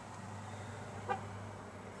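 Low steady hum of a Toyota Tacoma pickup idling, heard inside the cab, with one brief faint sound about a second in.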